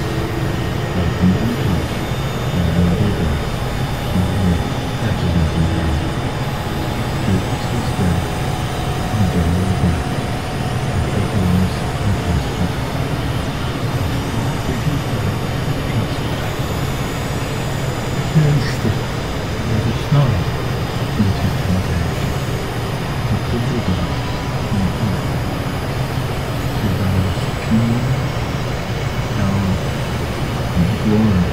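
Experimental electronic noise music: dense synthesizer drones with a churning low rumble, several held tones and faint rising glides on top, continuing without a break.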